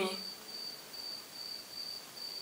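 A cricket trilling faintly: a steady high note with short breaks.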